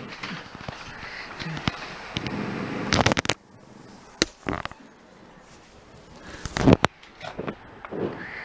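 Small dog growling in play as it chews and worries a toy, a rough rumbling growl for the first three seconds or so. This is followed by a few sharp clicks and knocks from the toy and its scrabbling on the carpet.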